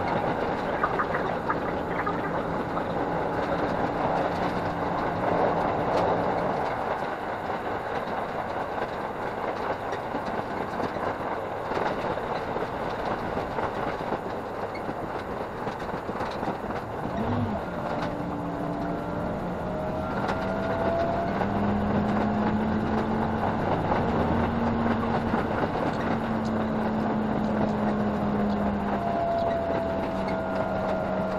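Diesel railcar running on the line, heard from inside the carriage and sped up five times: a continuous rushing rumble with fast clatter. Steady engine hum runs under it, and in the second half some engine tones rise in pitch.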